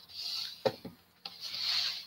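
Rubbing and brushing noise on a close microphone, two passes of about half a second each, with a couple of short clicks between them: handling noise as the wearer moves.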